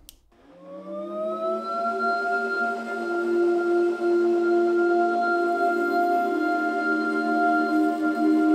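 Table-mounted wood router spinning up after being switched on, its pitch rising over the first couple of seconds and then holding a steady, several-toned hum. It is plugged in through an adapter fitted to make its sound less annoying.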